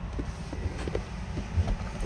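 Low, steady rumble of background noise inside a parked car's cabin, with a few faint soft knocks.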